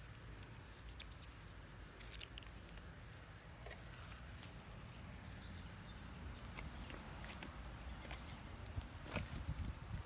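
Faint rustling of pea vines with scattered small snaps and clicks as sweet pea pods are picked by hand, over a low rumble. The clicks grow busier near the end.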